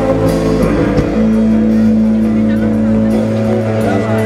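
Live rock band playing: bass guitar and drums under long held chords, with a change of chord about a second in.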